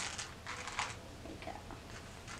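Cocoa Puffs cereal poured from a small plastic cup into a plastic cup, the dry puffs tumbling out in two short clattering bursts within the first second.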